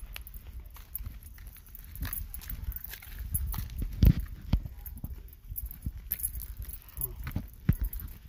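Footsteps on pavement and the knocks of a handheld phone being carried while walking, irregular, the loudest about four seconds in and again near the end, over a low rumble.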